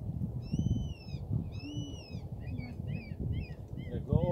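A bird calling: two drawn-out, arched calls, then a quick run of short calls, over a steady low rumble.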